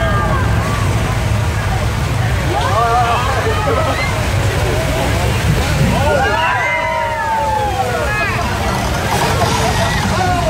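Staged flash flood: a large mass of water rushing down a street and splashing up beside a tram, over a steady low rumble. People cry out over it, briefly about three seconds in, then in a longer burst of whoops from about six to eight seconds.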